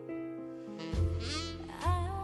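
Cartoon soundtrack from a television speaker. Sustained piano notes fade out, then about a second in a heavy bass beat starts together with a wavering, whistle-like sound effect that slides upward, settling into steady music.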